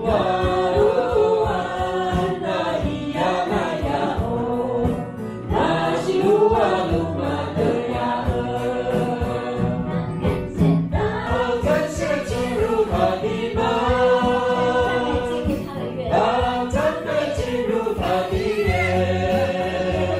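Mixed choir singing a worship song in rehearsal, led by a woman's voice into a microphone, with strummed acoustic guitar and bass guitar accompanying. The singing runs in sustained, held phrases over a steady bass.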